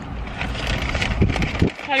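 Paper food bags rustling and crackling with chewing, over a low steady rumble inside a car cabin; a voice starts to speak near the end.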